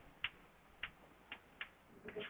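Chalk tapping against a blackboard while a word is written: four faint, short, sharp clicks spread across two seconds.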